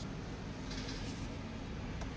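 Faint steady background hum and hiss (room tone), with a faint brief rustle a little under a second in.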